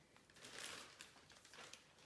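Faint crinkling of a plastic shopping bag being carried.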